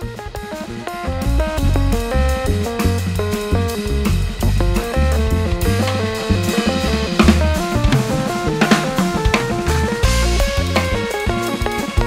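Band music: a drum kit with kick drum, snare and cymbals plays under bass and a melodic pitched instrument. It swells in over the first second or so, and the cymbal and drum strokes grow busier about halfway through.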